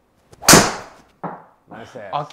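Golf driver striking a ball: one loud, sharp crack about half a second in that rings away quickly, followed by a smaller knock just over a second in.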